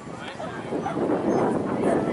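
A dog barking among people's voices, over a rushing noise that swells about a second in.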